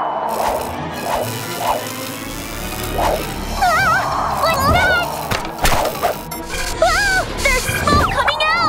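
Cartoon sound effect of a fallen power line sparking: a continuous electrical crackle with several sharp snaps, over background music.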